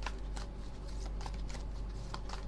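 A deck of playing cards being shuffled overhand, cards sliding and slapping from hand to hand in short soft strokes, about two or three a second.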